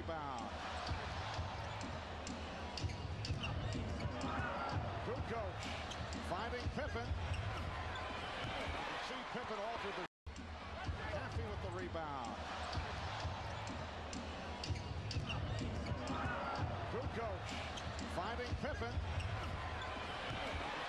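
Basketball game sound from an arena broadcast: a steady crowd din with a ball dribbling on the hardwood and short sneaker squeaks. The sound cuts out for an instant about halfway through.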